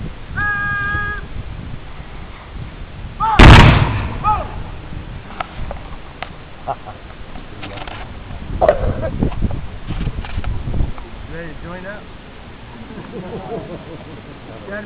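A rank of Civil War reenactors' black-powder muskets fired as a volley, heard as one sharp, loud report about three seconds in. A long shouted call comes just before it, and a few fainter scattered reports follow.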